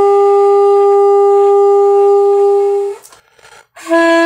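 Alto saxophone holding one long, steady note for about three seconds, then a brief break for breath before a lower note begins near the end.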